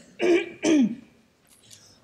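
A woman clearing her throat twice in quick succession into a lectern microphone, the second sound dropping in pitch; her voice is hoarse, by her own account strained.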